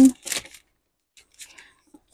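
Scrapbook kit papers and a plastic sleeve being handled: a few brief, soft rustles and taps, the first just after the start and fainter ones a little past a second in, with quiet between.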